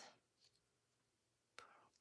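Near silence: room tone, with a faint voice sound near the end.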